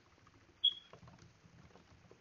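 Faint computer-keyboard clicks from typing, with one short high-pitched ping about a third of the way in.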